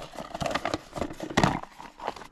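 Plastic food tub being handled and its lid pressed on, with irregular plastic scuffs and clicks and one louder knock about one and a half seconds in.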